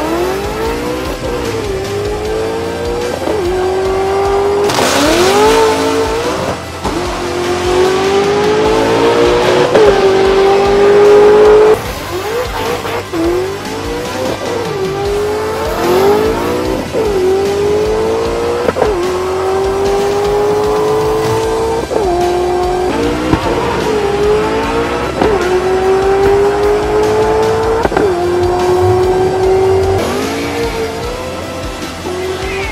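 Supercharged 4.6 L DOHC V8 of a Terminator Mustang Cobra with a Whipple blower, run at full throttle down the drag strip. Its pitch climbs through each gear of the six-speed manual and drops sharply at every shift, again and again across several passes.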